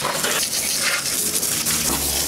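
Garden hose spray nozzle jetting water against a mountain bike's wheel and frame, rinsing off soapy cleaner: a steady hiss of spray.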